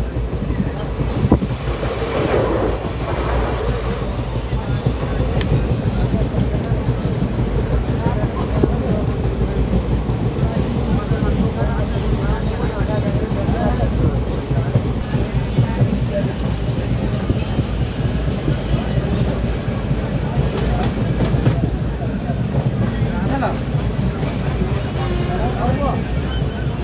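A train running steadily: a continuous heavy rumble with the clatter of wheels on the rails.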